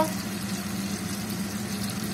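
Lamprey pieces frying in oil in a pan, a faint sizzle under a steady low mechanical hum.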